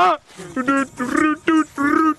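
A person's voice giving a run of short, high-pitched calls, about three a second.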